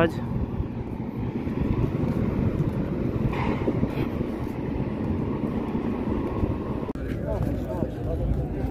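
Steady low rumble of outdoor street noise, with vehicle traffic and faint voices in the background and no single sound standing out.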